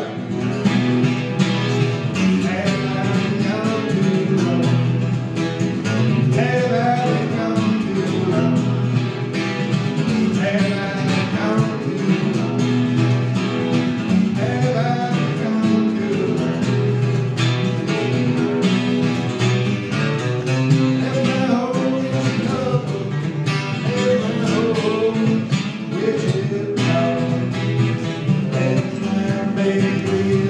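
Acoustic guitar strummed steadily through a song, played live at an even loudness.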